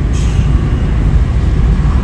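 Steady low rumble of a car driving, heard from inside the cabin, with a brief hiss just after the start.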